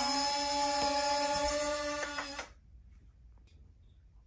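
A steady pitched tone with overtones, like an electrical hum or a held note, cuts off abruptly about two and a half seconds in, leaving near silence.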